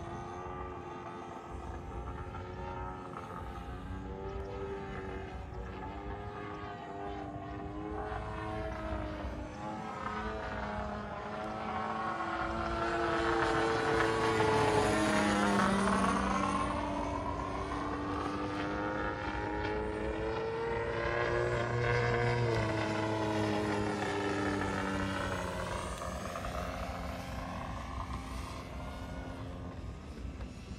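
Radio-controlled aerobatic model airplane in flight, its motor and propeller note rising and falling in pitch through manoeuvres. It is loudest on a close pass about halfway through, with the pitch sweeping as it goes by, and swells again a little later.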